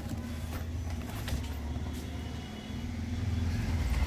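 Cardboard boxes being handled and pulled open, with a few faint rustles and light knocks, over a steady low rumble.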